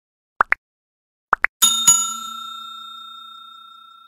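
Like-and-subscribe animation sound effects: two quick pairs of short, rising click sounds for the button taps. Then a notification bell is struck twice and rings out, fading over about two seconds.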